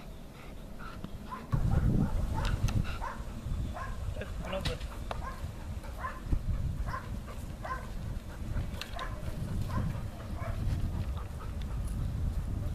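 A Belgian Malinois-type dog whining in short, high yelps again and again, over a low rumble that starts about a second and a half in.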